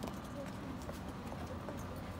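Stiletto heels of black patent thigh boots tapping a few times on paving stones as the wearer steps and turns to sit, over a steady low street hum.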